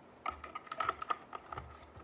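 A run of small plastic clicks and taps as the fan's plastic shroud and the card's power-connector plugs are handled and fitted together.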